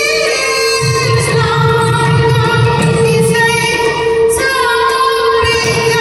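Manipuri classical dance music: a female voice sings a wavering melody over a steady held drone note.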